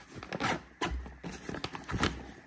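Hands handling a fabric crossbody bag: rustling and scraping of the fabric with a few soft knocks as a zippered side pocket is pulled open.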